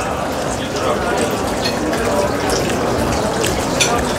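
Restaurant background chatter, a steady murmur of other diners' voices, with a few light clicks near the end.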